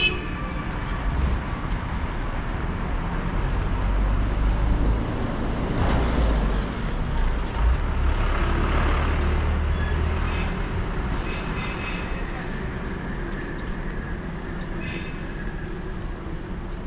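City road traffic with a heavy vehicle's low engine rumble, which swells from about three seconds in and fades after about ten seconds, with a hiss of tyres and air at its loudest.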